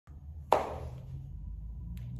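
Handling noise from the recording phone: a single sharp knock about half a second in as it is set in place, then a low steady rumble.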